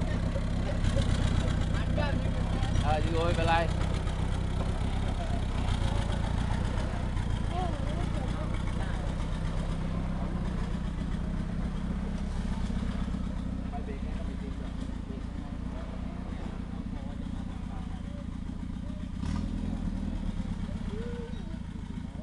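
Engine of a lifted 4x4 off-road truck running at low speed as it crawls up a deep rutted dirt trail. It gets louder near the end.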